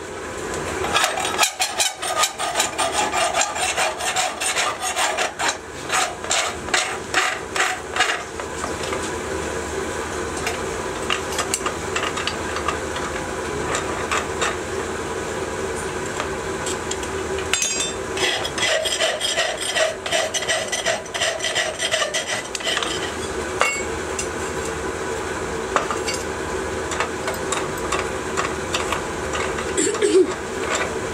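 Hand file rasping in quick back-and-forth strokes on a freshly sand-cast aluminium part held in a vise, in two runs of strokes, over a steady hum.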